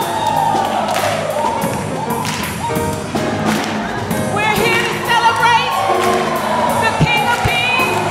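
Live gospel-style music: a woman singing solo with wide vibrato into a microphone over choir, piano and drums, with the choir clapping along. A couple of low drum thumps come near the end.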